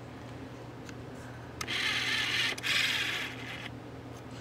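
Handling noise from a sheet of stickers being held and moved: two short rustles in the second half, over a faint steady hum.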